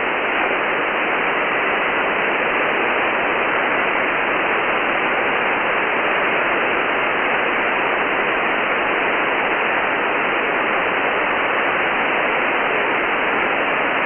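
Steady shortwave receiver hiss from the 10-metre band, heard through the radio's narrow voice filter, with no readable signal on the frequency: the Ukrainian station has stopped transmitting and the other side of the contact is not copied.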